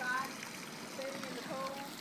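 Soft splashing and lapping of pool water from a toddler in arm floats kicking as he swims, with faint voices in the background.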